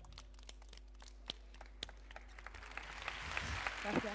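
Audience applause starting after the song: a few scattered claps at first, swelling into fuller applause from about two and a half seconds in.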